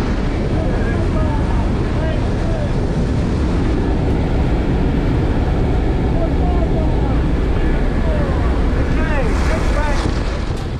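Loud, steady drone of a jump plane's engine and propeller in the cabin, mixed with wind rushing through the open door. Indistinct shouted voices rise over it every few seconds.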